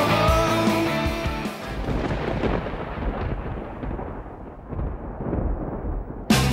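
A rock song stops about a second and a half in, giving way to a rolling rumble of thunder that dulls and fades.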